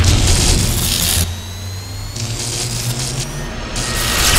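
Logo-intro sound design: electric crackling and buzzing bursts over a low hum, with a faint rising whine in the middle and a swelling whoosh near the end.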